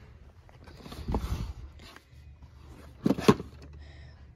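Clothing rustle and phone-handling noise as a person gets up off a carpeted floor, with a short, sharp knock about three seconds in that is the loudest sound.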